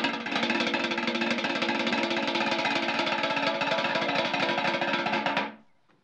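Fast, continuous drum roll beaten with two wooden sticks on the bottom of an upturned galvanized metal tub, a fanfare before a magic act. It stops about five and a half seconds in.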